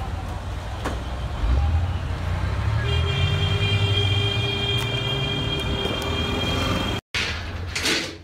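Street noise dominated by a heavy vehicle engine that swells and revs up about a second and a half in, with a steady high-pitched tone, like a horn or siren, held from about three seconds in until near the end.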